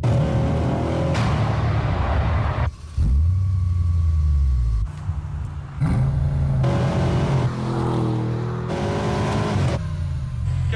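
Bentley Continental twin-turbo V8 engine revving in a string of edited bursts, its pitch climbing in each, with a stretch of deep, steady low rumble in the middle.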